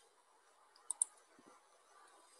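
Two sharp computer mouse button clicks in quick succession, about a second in, over a quiet room background.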